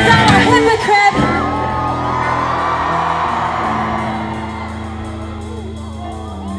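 Live rock band playing loudly, then breaking off about a second in, leaving a held guitar chord ringing and slowly fading while the audience whoops and yells.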